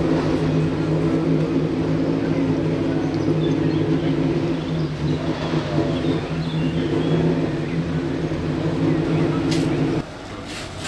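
Engine of a classic rally saloon idling steadily, an even drone that holds the same pitch throughout and stops abruptly at the very end.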